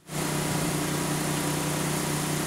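Steady motor drone with a constant low hum and no change in pitch.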